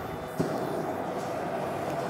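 Propane boil burner running with a steady rushing rumble under a large aluminium stockpot. About half a second in comes a single metal knock as the pot's aluminium lid is set on.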